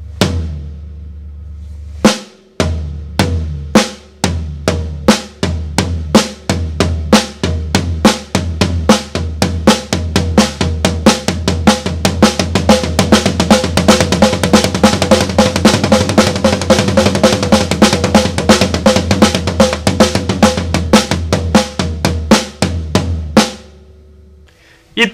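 Acoustic drum kit: a crossed-hand sticking pattern (RLR LRL) played between the snare drum and the floor tom. It starts with single strokes about half a second apart, speeds up steadily into a fast, dense run, and stops shortly before the end.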